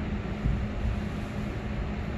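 Steady machine hum with an even hiss, room background noise, and a faint low knock about half a second in.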